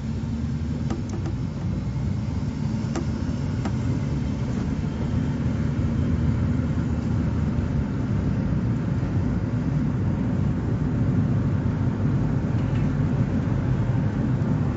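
Steady low rumble of engine and tyre noise inside the cabin of a moving car.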